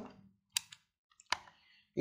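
Two sharp clicks about three-quarters of a second apart from a handheld digital multimeter's rotary selector switch, as it is turned to the AC voltage range.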